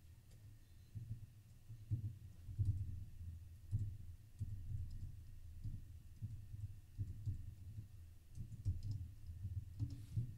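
Typing on a computer keyboard: irregular keystrokes, several a second, heard mostly as dull low thumps with faint clicks on top.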